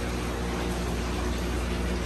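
Steady low hum of aquarium pumps with water running and splashing into the tanks, a constant wash of water noise.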